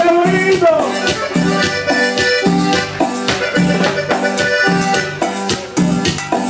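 Live band playing loud Latin dance music through the stage PA, with a steady bass-and-drum beat and a melody over it.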